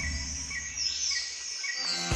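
Wildlife-ambience sound design for a logo intro: a deep rumble that fades out about one and a half seconds in, under short high chirps repeating about twice a second.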